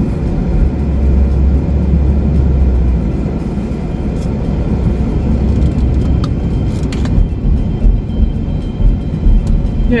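Road noise inside a moving car's cabin: a steady low rumble of tyres and engine, a little louder in the first few seconds.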